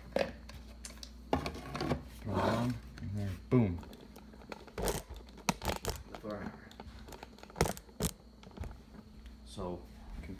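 Handling noise of wires and a plastic prop hammer's casing being fitted together, with rustling and crinkling and a short stretch of indistinct speech. Several sharp clicks and knocks follow, about five to eight seconds in.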